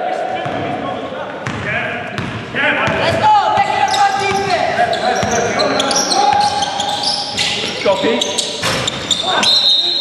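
Indoor basketball game on a hardwood gym floor: a ball bouncing as it is dribbled, sneakers squeaking on the boards, and players' voices ringing in the large hall.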